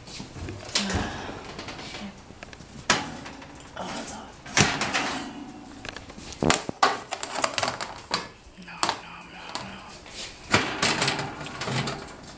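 Several sharp knocks and clatters of a metal baking sheet and oven door being handled, with indistinct voices in the room.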